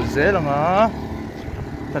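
A person's voice calls out in one long, wavering, drawn-out call in the first second. It rides over steady street noise with a low vehicle-engine rumble.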